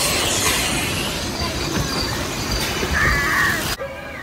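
Loud rushing and rattling of an amusement-park ride car moving along its track, recorded from on board. It cuts off abruptly near the end.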